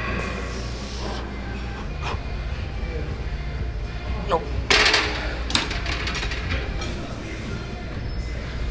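A man straining through a set on a pec deck chest-fly machine, with grunts and a loud forced breath about halfway through, over background music with a steady bass.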